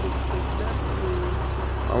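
Steady low rumble of a heavy lorry's engine idling, with no sharp bangs.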